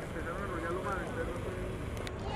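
Indistinct voices in the background over a steady low rumble of wind on the microphone.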